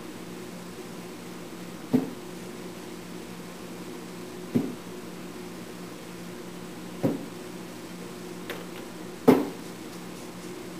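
A clothes iron knocking down on veneer laid on a wooden worktable as it is pressed along the veneer tape to dry and shrink it: four dull knocks, about every two and a half seconds, the last one the loudest. A steady hum runs underneath.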